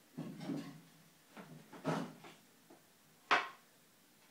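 Clean-up clatter at a plastic trash can: a scuffle and rattle near the start, then two sharp knocks, the second and loudest about three seconds in.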